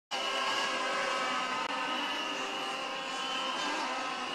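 Stadium crowd din with many plastic horns blown at once, a thick wall of steady, overlapping horn tones over the crowd noise.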